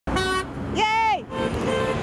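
Car horns honking from passing traffic: a short honk, then a longer one that bends in pitch, then a fainter steady honk near the end, over traffic noise.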